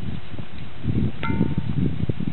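Low, uneven rumbling on the microphone, with one short metallic ring, like a small bell, about a second in.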